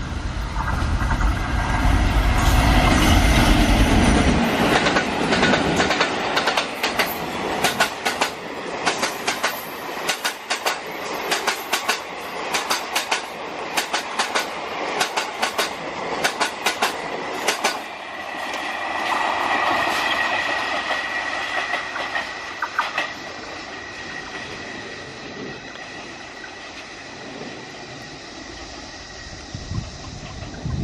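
Twin ALCO WDG3A diesel locomotives, with 16-cylinder ALCO 251 engines, pass with a heavy low engine rumble while hauling a passenger train up a gradient. The coaches follow with rapid clickety-clack of wheels over rail joints. About two-thirds of the way through there is a brief high wheel squeal, and then the sound fades as the train moves away.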